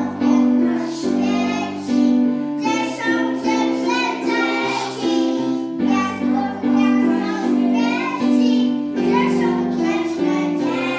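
A group of young preschool children singing together over steady instrumental accompaniment.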